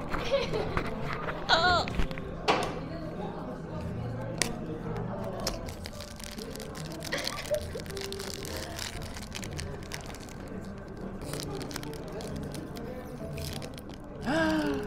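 Foil wrapper of a Sonny Angel blind-box figure crinkling and crackling as it is handled and torn open, over soft background music and café chatter.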